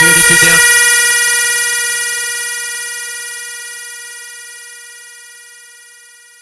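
The close of a Brazilian funk track: the beat and vocals stop about half a second in, leaving one long held synth note that fades away steadily.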